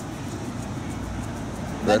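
Steady low rumble of a nearby idling vehicle engine; a voice begins at the very end.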